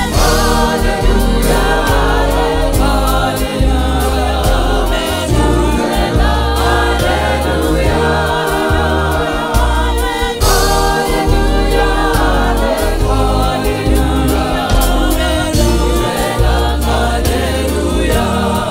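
Gospel choir singing in Sesotho with male lead voices, backed by a live band: heavy bass notes, drums with cymbals, and keyboard. A new phrase with a cymbal crash comes in about ten seconds in.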